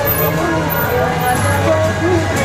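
Temple procession street sound: a steady low vehicle hum under overlapping pitched lines that slide up and down, mixing procession music and voices.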